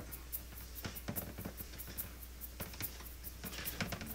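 Hands rubbing butter and shortening into flour in a stainless steel bowl: faint, soft scratching and crumbling in scattered little ticks, with quiet music underneath.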